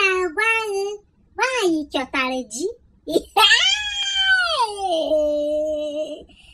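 A woman's high-pitched, child-like voice talking in short Igbo phrases, then one long drawn-out cry of over two seconds that drops in pitch partway through and holds low.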